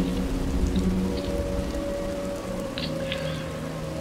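Ambient background music: sustained low synth tones held steadily, shifting once about midway, with a faint crackling patter of noise over them.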